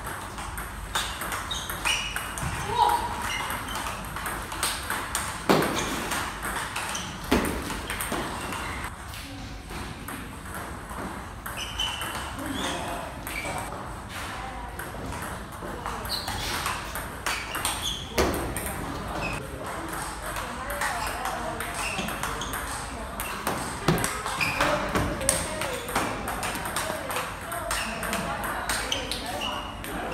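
Table tennis rallies: the ball clicking back and forth off the paddles and the table in quick, repeated sharp ticks.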